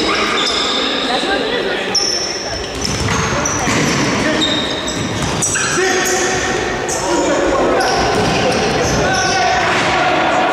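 Futsal players' sneakers squeaking in short high chirps on a hard sports-hall floor, with the ball being kicked and dribbled, all echoing in the large hall.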